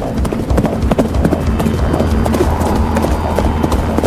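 Horse hooves clip-clopping, a run of short knocks, over background music.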